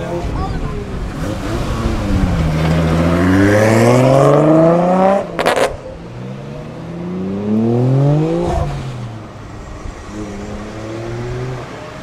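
Nissan 200SX (S13) with a swapped RB25DET turbocharged straight-six accelerating away. The revs climb steadily, drop with a short sharp burst about five seconds in, climb again in the next gear, then settle to a steadier, quieter run near the end.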